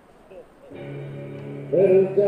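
Faint open-air background, then music starts suddenly about three-quarters of a second in with a steady held chord. A voice comes in loudly over the music near the end.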